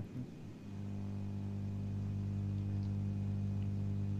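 A steady low hum with a few evenly spaced overtones, coming in about half a second in and holding level.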